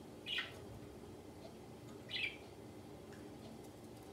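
A budgerigar gives two short chirps, one just after the start and another about two seconds in.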